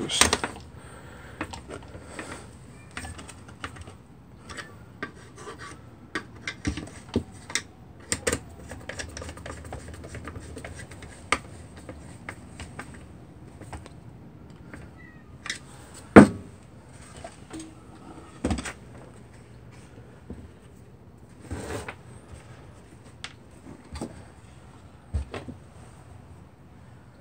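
Small screwdriver turning screws into a space heater's sheet-metal housing, with scraping and many short metallic clicks as screws and tools are handled on the workbench. A sharper knock comes about 16 seconds in.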